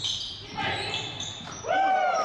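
A basketball game in a gym hall: a ball bouncing on the court and voices echoing around the hall, with a loud, high-pitched call near the end.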